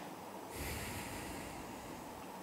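A man breathing in through his nose close to the microphone, a short airy hiss starting about half a second in and fading away within about a second.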